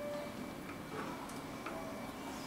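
Quiet room tone with a few faint, light ticks spaced unevenly, over a faint steady high hum.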